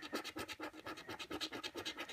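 A penny scraping the silver latex coating off a paper scratchcard in quick, short back-and-forth strokes, several a second, fairly quiet.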